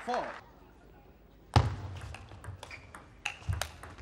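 A table tennis rally: the celluloid-type ball clicking sharply off rubber-faced bats and the table in quick succession, starting about a second and a half in, with a few dull thuds mixed in.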